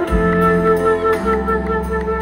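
Live rock band music heard from the audience: a melody of held notes steps between a few pitches over steady backing chords and bass.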